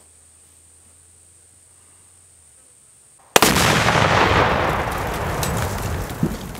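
Binary explosive packed in a car goes off, set off by a Glock pistol shot. One sudden, very loud blast comes a little over three seconds in, then dies away slowly.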